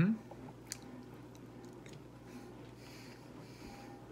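Faint chewing of a mouthful of steak, with one light click about three-quarters of a second in.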